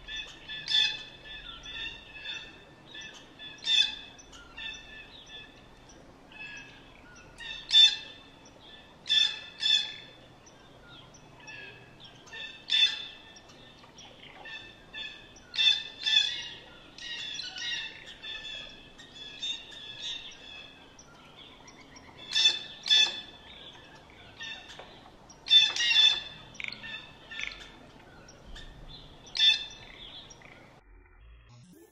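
Birds chirping and calling over and over, short calls in quick runs with louder calls every few seconds.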